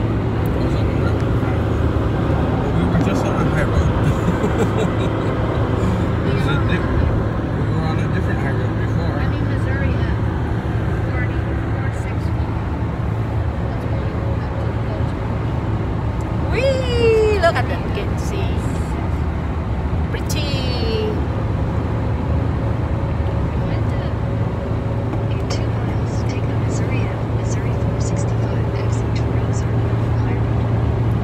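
Steady road and engine noise inside a car cruising on a highway, with a constant low hum. Two short falling tones come past the middle.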